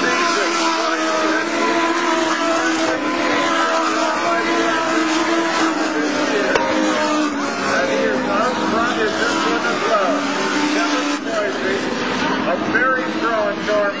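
Several Legends race cars' Yamaha motorcycle engines running at high revs as the pack laps the oval. Several engine notes overlap, some holding steady and some rising and falling in pitch as cars pass.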